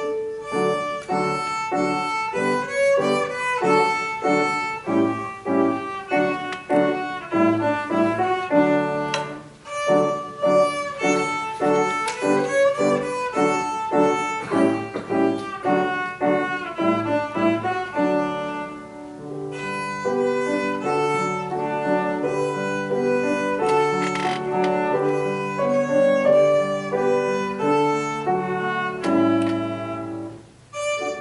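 Viola and piano playing a classical piece together, the viola carrying the melody over the piano accompaniment. The music begins right at the start, with brief quieter breaks about nine and nineteen seconds in.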